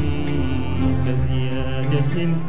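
Live Afro-Arab ensemble music, a violin section playing held melodic lines over a steady low bass.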